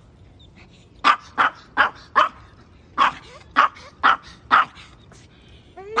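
A small Maltese dog barking in two quick runs of four short, sharp barks, with a faint one near the end.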